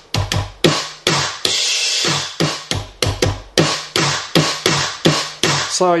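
E-mu Drumulator drum machine playing sounds from its custom EPROM bank: a quick, regular run of deep bass drum hits that drop in pitch, mixed with snare hits. Two different snares are heard among the bass drums.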